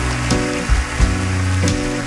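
Instrumental opening of a song on acoustic guitar and upright bass: plucked notes over deep sustained bass, a new note struck about two or three times a second.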